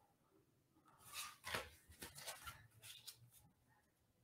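Faint handling of large oracle cards: a run of short card slides and soft taps as cards are moved and laid on the pile, clustered between about one and three and a half seconds in.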